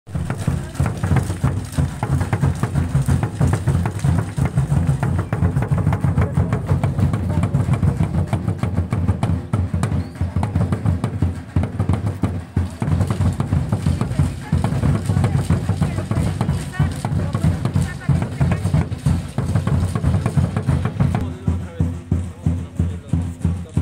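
Drumming at a fast, steady beat, with voices of a crowd talking underneath.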